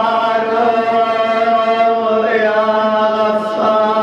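A man's voice chanting an Arabic supplication in long, drawn-out held notes, moving to a new note about two seconds in and again near the end.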